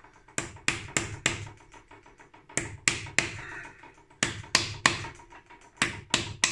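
Hammer blows on a wooden drift, driving a new crankshaft oil seal into a Harley-Davidson Sportster crankcase until it sits flush. The taps are sharp and come in short runs of three or four, about three a second.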